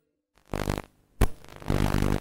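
Electronic glitch sound effects, as of a VHS tape starting to play: after a moment of silence, two short bursts with a sharp click between them, about a second in.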